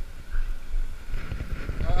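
Wind and clothing buffeting a body-worn GoPro's microphone in a low, irregular rumble with soft thumps; a man's voice starts near the end.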